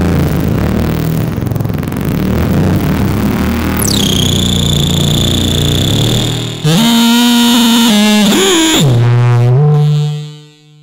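Behringer Neutron analog synthesizer playing a dense low drone with noise over it. About four seconds in, a high whistling tone sweeps down and holds. Near seven seconds the sound switches suddenly to a clear pitched note that bends down and back up before falling away at the end.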